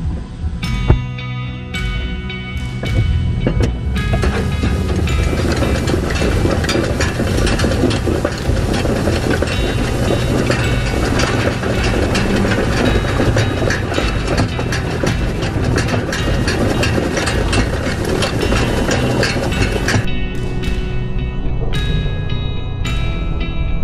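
Background music over a tractor towing a four-bar side-delivery hay rake, the rake's reel making a rapid ticking clatter. The clatter stops near the end while the music goes on.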